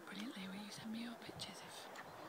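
Low, hushed voices of people talking quietly, partly whispering.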